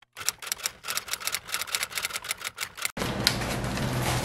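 Typewriter keystroke sound effect: a quick, uneven run of key clicks lasting nearly three seconds, stopping abruptly. A steady low background sound then takes over.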